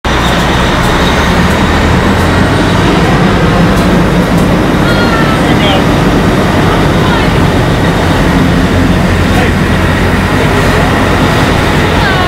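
Fire engine's diesel engine and pump running steadily and loudly, a constant rumble with a low hum, while firefighters work a charged hose line. Faint voices come through underneath.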